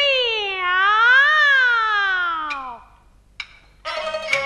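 A Peking opera female-role (dan) performer's falsetto voice holding one long drawn-out vowel for nearly three seconds, its pitch rising and then falling away. Two sharp clicks follow near the end.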